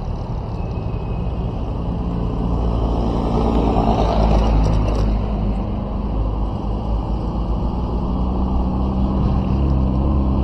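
Engine hum and road noise of a vehicle driving, steady throughout, growing somewhat louder about four seconds in.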